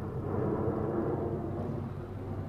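1998 Ford Ranger's 2.5-litre four-cylinder engine idling steadily with an even low rumble, running smoothly.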